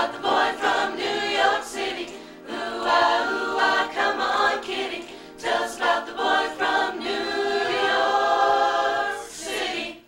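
A mixed group of men and women singing a cappella in harmony, with no instruments. The song closes on a long held chord that cuts off sharply at the very end.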